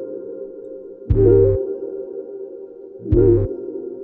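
Keyboard synthesizer music: a sustained pad chord with deep bass notes struck twice, about a second in and again about three seconds in.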